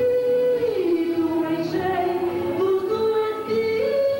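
A woman singing a gospel song into a microphone over electronic keyboard accompaniment. She holds long notes: the pitch drops about a second in, then climbs step by step toward the end.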